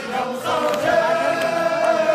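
A group of men singing a traditional Hyolmo folk song together in unison, holding long drawn-out notes with slow pitch bends.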